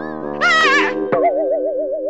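Cartoon background music with a wobbling, springy boing sound effect about half a second in that falls in pitch, followed by a wavering tone that carries on over the held music.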